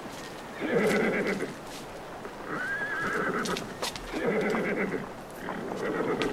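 A horse whinnying in repeated short calls, four in all, about a second or so apart.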